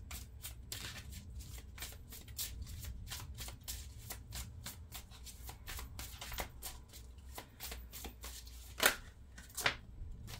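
A tarot deck being shuffled by hand: a quick, continuous run of soft card flicks, with two louder card slaps near the end.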